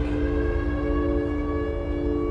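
A sustained low drone of several steady tones held together over a deep rumble, with fainter higher tones joining about half a second in.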